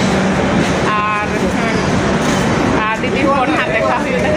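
People's voices talking over the steady low hum of an express train standing at the platform.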